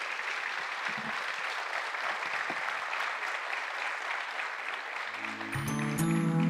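Audience applauding steadily. Near the end, a music jingle starts with sustained tones.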